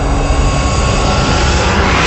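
Loud rushing whoosh-and-rumble sound effect, like a jet passing, swelling and growing brighter towards the end.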